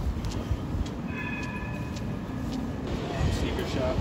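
Outdoor city street ambience: a low steady rumble with scattered footsteps and passers-by talking, which grows near the end. A brief high-pitched squeal lasts about a second, starting about a second in.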